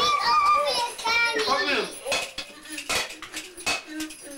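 A child's high-pitched wordless voice for about two seconds, then a few sharp clinks and knocks.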